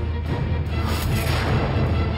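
Dramatic background music with a steady deep rumble in the low end and a hissing swell about a second in.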